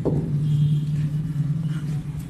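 A steady low hum of a running engine or motor, with faint squeaks of a marker writing on a whiteboard.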